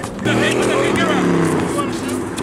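A motor vehicle's engine running past, one steady pitched tone that falls slightly over about a second and a half.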